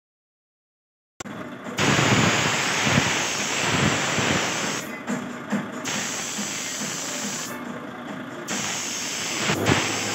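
Gravity-feed air spray gun hissing as it sprays paint, starting about a second in and running steadily, with the hiss thinning twice for about a second.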